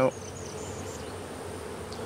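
Honey bees buzzing in a steady hum around an open hive.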